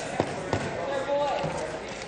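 Two dull thumps close together near the start, over the low murmur of a large legislative chamber, with a faint voice in the background.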